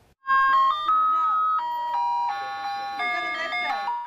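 Ice cream truck's electronic chime playing its jingle, a simple melody of single held notes that starts suddenly about a quarter second in.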